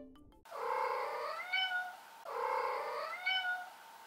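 A cat's meow heard twice, the same call each time, each about a second and a half long with the pitch rising near its end.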